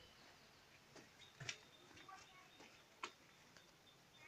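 Near silence with a few short sharp clicks, the loudest about one and a half seconds in and another about three seconds in.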